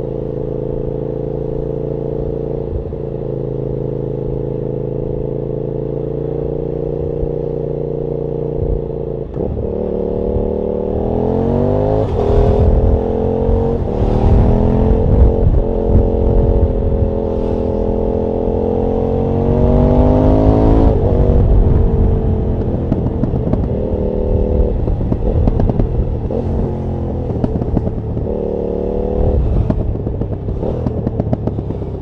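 KTM Super Duke's V-twin engine from onboard. It runs at a steady cruise at first, then accelerates hard, its pitch climbing through several gear changes with rising wind rush. About two-thirds of the way through the throttle is shut and the engine drops back, rising and falling in traffic for the rest of the time.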